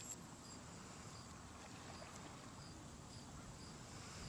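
Faint outdoor ambience: a low steady rumble with a high, thin insect chirp repeating about every half second.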